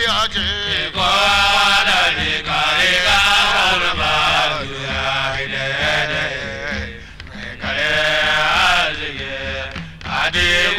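Hausa praise song: voices chanting a melody in long phrases over a steady drum accompaniment.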